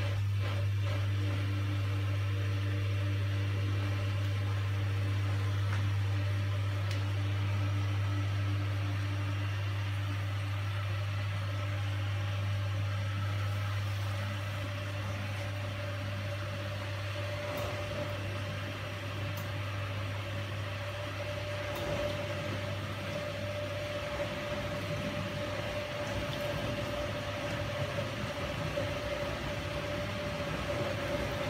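Miele G 560 dishwasher taking in its water fill for the main wash: a steady low hum, with a higher steady tone joining a little past halfway.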